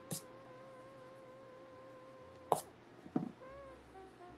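Drawing tools being handled on a desk: a pencil and a pink eraser are picked up and set down, giving a soft click just after the start and two sharper knocks about two and a half and three seconds in, the first the loudest. Under them runs a faint steady hum on a single slightly wavering tone.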